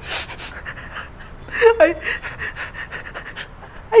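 A man breathing hard in short, noisy puffs, with a brief strained voiced sound about a second and a half in.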